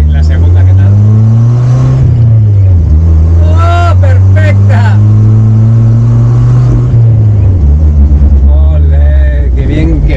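1991 Jeep Wrangler engine heard from inside the cab, pulling through the gears on a freshly replaced manual gearbox: the engine note climbs, drops at a shift about two seconds in, climbs again and drops at another shift around seven seconds. The gearbox is going well.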